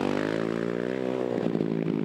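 A race ATV's engine running hard as the quad pulls away, its note dipping briefly at the start, then holding steady before fading out about a second and a half in.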